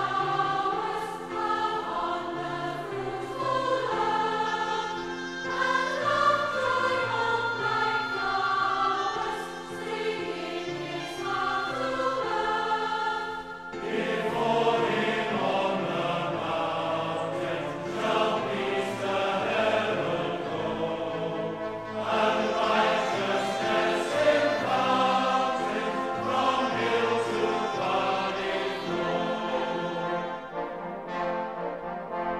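Choir singing a hymn with instrumental accompaniment. After a brief dip about fourteen seconds in, the next verse begins, fuller and louder.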